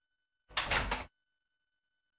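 A wooden door with glass panels being shut: one short sound about half a second in.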